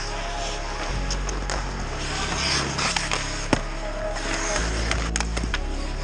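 Ice hockey play at the net: skates scraping on the ice and sticks clacking, with a sharp knock about three and a half seconds in and a few more clicks near the end. Music plays in the background.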